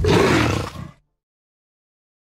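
A big cat's roar used as a sound effect for the Jaguar logo: one loud burst of about a second that swells and fades, then cuts off into silence.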